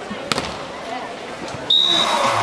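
A single sharp smack of a hand striking a beach volleyball, about a third of a second in, over low background chatter. Near the end a brief high steady tone sounds and loud electronic music starts.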